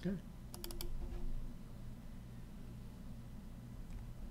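A quick cluster of about four computer mouse clicks about half a second in, then a faint steady low hum.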